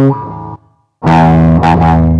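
Electric guitar through an amplifier: a note dies away in the first half second and there is a brief silence. About a second in, a loud chord is struck and rings, with more notes picked over it near the end.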